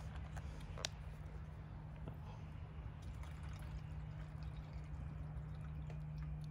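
Coil-cleaner concentrate trickling faintly from a squeeze pouch into a part-filled plastic sprayer tank, with one light click about a second in.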